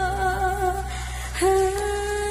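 A female vocalist sings a long held "hooh" with vibrato, moving to a new, lower and louder note about one and a half seconds in, over a steady sustained low backing of the band.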